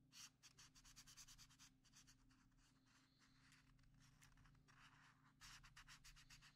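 Felt-tip marker scratching faintly across paper in quick short strokes, several a second, while colouring in, with a denser run of strokes about five seconds in.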